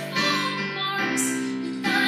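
A woman singing over chords played on a Casio Privia digital piano; a new chord comes in about a second in.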